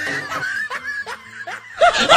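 Laughter sound effect: a loud burst of rapid, repeated 'ha-ha' cackling that starts near the end, after a fainter first second and a half.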